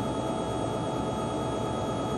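Steady, even engine drone with a constant high whine.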